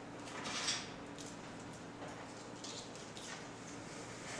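Willow wands being handled and pushed down into a bucket of packed dirt: soft scraping and rustling in short bursts, the loudest about half a second in.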